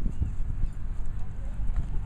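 Voices of people talking faintly, over irregular low thumps and rumble.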